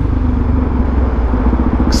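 Suzuki DR-Z400SM single-cylinder four-stroke engine running at a steady cruising speed on the highway, with a steady rush of wind and road noise over the low engine note.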